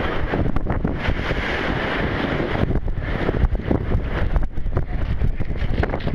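Strong wind buffeting the microphone in irregular gusts, over rough sea surf breaking and splashing against a concrete seawall.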